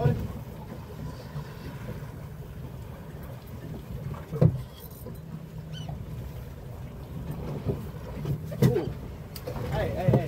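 Wind on the microphone and water slapping against a boat hull, with a low steady hum in the second half. A single sharp knock comes about four and a half seconds in, and there are short grunts or voice sounds near the end.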